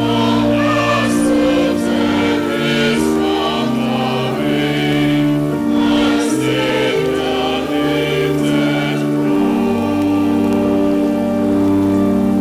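Choir singing a hymn in slow, held chords, several voice parts moving together note by note.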